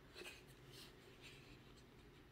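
Near silence, with a few faint scratches and rubs of fingers handling a hard plastic tool mount, mostly in the first second.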